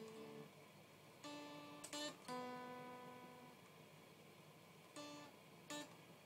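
Ibanez Gio electric guitar played quietly, picking single notes at an uneven pace: six or so notes, with one held and left ringing a little over two seconds in.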